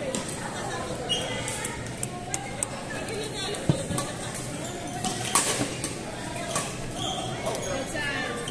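Badminton rackets striking a shuttlecock in a large hall: several sharp, irregular clicks, the loudest a little past the middle, over indistinct chatter of voices.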